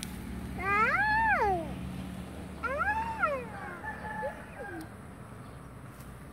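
An animal's calls: three drawn-out meow-like cries, each rising then falling in pitch. The first two are clear and the third, near the end, is fainter.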